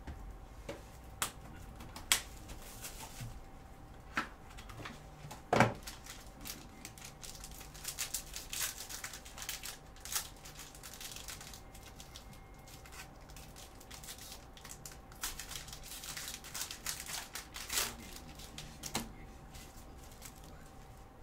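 Plastic shrink wrap being torn and crinkled off a trading-card box, in crackling bursts. A few sharp taps of the box being handled come in the first seconds, the loudest about five and a half seconds in. A faint steady hum runs underneath.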